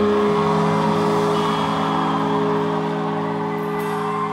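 Live ska-rock band holding one long sustained chord, several notes held steady under a wash of noise from the drum kit's cymbals, fading slowly near the end.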